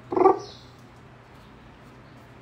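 A short, muffled vocal sound from a man inside a full-face helmet, just after the start, followed by a faint brief rustle. After that only a low steady room hum remains.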